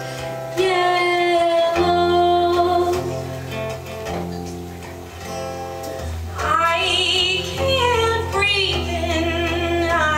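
Live song: a woman singing over a strummed acoustic guitar. Her voice comes in strongly, with vibrato, about six and a half seconds in.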